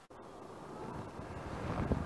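Wind on the microphone outdoors: an even, low hiss that starts from silence and grows steadily louder over the two seconds.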